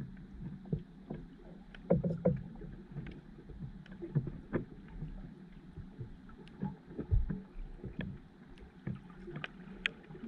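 Underwater sound picked up by a submerged camera: a low steady rumble of moving water with irregular knocks and clicks. The loudest knocks come about two seconds in and again about seven seconds in.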